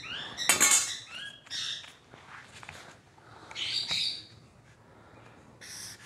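A bird chirping and squawking in the background: a handful of short, high calls, some sliding in pitch, the loudest about half a second in. Near the end come light scrapes and clicks of a ruler and marker being handled on paper.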